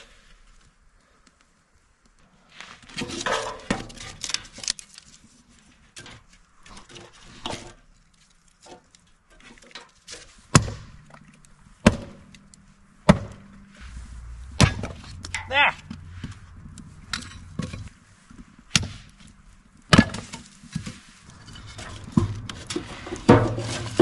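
Hatchet splitting kindling: a series of sharp knocks of the blade biting into wood, about one a second through the second half, after a few seconds of wood being handled and rustled.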